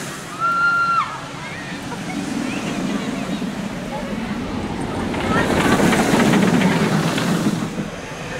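Intamin launched roller coaster train rolling past on its track, its rumble swelling to a peak about five seconds in as it passes close. A rider's brief held scream sounds about half a second in.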